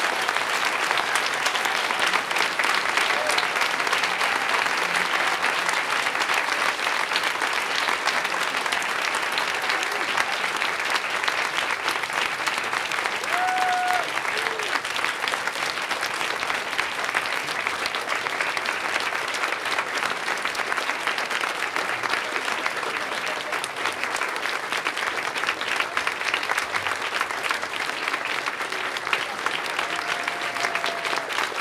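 Audience applauding steadily and at length, easing off slightly near the end.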